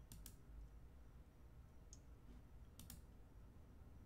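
Computer mouse clicks over near-silent room tone: two clicks, one at the start and one just before three seconds in, each a quick pair of ticks.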